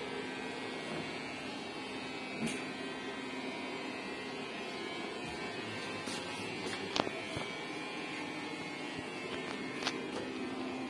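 A steady mechanical hum with a low steady tone, broken by a few short sharp clicks, the loudest about seven seconds in.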